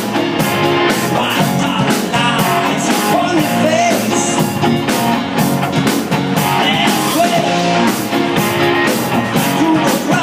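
Live rock band playing: keyboards, electric lead guitar, bass guitar and drum kit, with a steady drum beat under sustained keyboard and guitar notes, recorded on an iPad.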